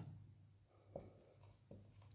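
Near silence, with a marker writing on a whiteboard: two faint short strokes, about a second in and near the end.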